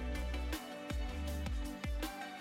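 Background music with a steady beat and deep bass notes, some of which slide down in pitch.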